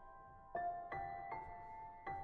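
Solo piano playing a slow, gentle melody: three notes struck in turn about half a second apart, each left to ring.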